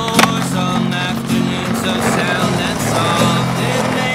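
Background music over skateboard sounds: a sharp clack of the board landing a trick just after the start, then the wheels rolling on pavement.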